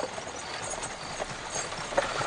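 Horse's hooves clip-clopping on a paved street as a horse-drawn carriage approaches, growing louder.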